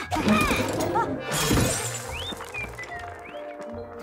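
Cartoon soundtrack: music under a noisy crash in the first half second and another loud burst around a second and a half in, mixed with short squeaky cartoon vocal sounds.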